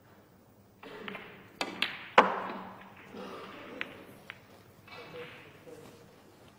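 Snooker shot: the cue tip strikes the cue ball, then sharp clacks of the balls colliding, the loudest about two seconds in, as a ball is potted, followed by a couple of lighter knocks a second or two later.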